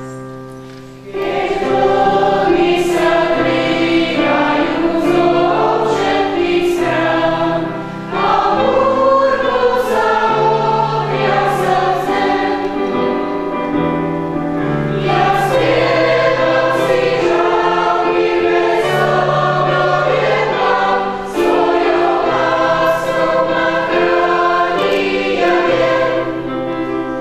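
Mixed church choir, mostly women's voices, singing a hymn. The voices come in about a second in and sing in long held phrases, with brief breaks about 8, 15 and 21 seconds in.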